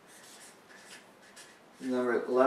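Felt-tip marker writing on flip-chart paper, a series of faint short rubbing strokes as letters are drawn. A man's voice starts near the end.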